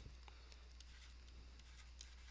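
Near silence: a low steady hum with a few faint ticks from a stylus writing on a pen tablet.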